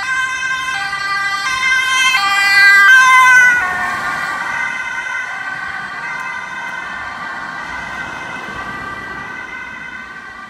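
Two-tone police siren alternating high and low about every 0.7 seconds. It grows louder as the vehicle approaches, drops in pitch about three and a half seconds in as it passes, then fades as it drives away.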